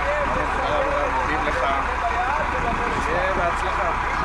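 Faint voices talking in the background over a steady rumble and hiss.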